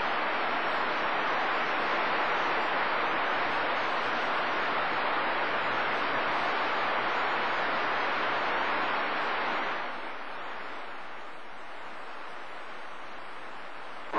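CB radio receiver on channel 28 giving a steady hiss of static between skip transmissions, with no voice on the channel. The hiss drops to a lower level about ten seconds in.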